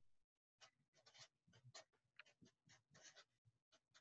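Very faint scratching of a felt-tip marker on paper, a quick run of short separate strokes as characters are written.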